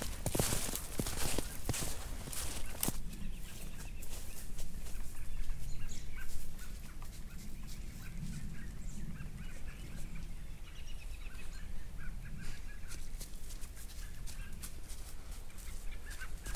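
Footsteps crunching through thin snow and dry grass for the first three seconds, then faint, scattered bird calls in the woods.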